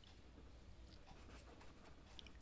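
A marker pen writing on paper, very faint, little above silence.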